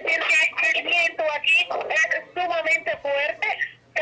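Speech only: a voice talking almost without pause, with one short break shortly before the end.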